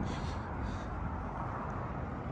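Steady outdoor background noise with no distinct event standing out.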